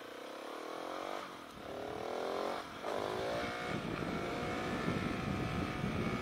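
Husqvarna 701 single-cylinder four-stroke motorcycle with an aftermarket Remus exhaust pulling away hard: the engine note climbs quickly, drops at an upshift about a second in, climbs again, drops at a second upshift near the middle, then carries on at a steadier pitch. The revs rise fast in each gear because a smaller front sprocket has shortened the gearing. Wind rush on the microphone builds as speed rises.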